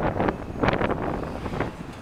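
Wind buffeting the camera's microphone outdoors, an uneven rumbling with gusts.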